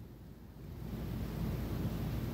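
Faint low rumbling background noise that slowly grows louder.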